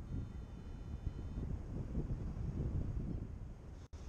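Wind buffeting the microphone in flight, a gusty low rumble. A few faint steady high tones sound over it for the first second and a half, and the sound drops out briefly just before the end.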